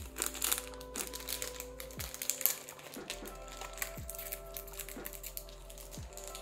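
Foil snack wrapper crinkling and crackling as it is pulled open by hand, over soft, steady background music.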